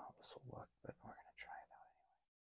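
A man whispering softly, words not made out, with hissy consonants.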